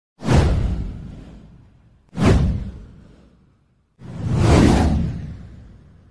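Three whoosh sound effects about two seconds apart, each with a deep rumble underneath. The first two hit suddenly and die away over about a second and a half. The third swells up more gradually and fades out slowly.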